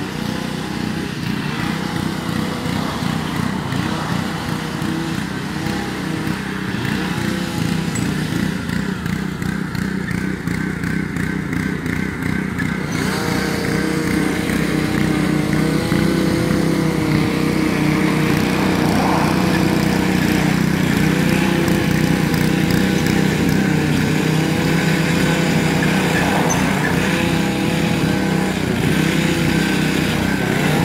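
Small petrol engine of a walk-behind yard machine working a dirt patch in the lawn, running steadily with its pitch repeatedly dipping and recovering as it takes load. It grows louder about 13 seconds in.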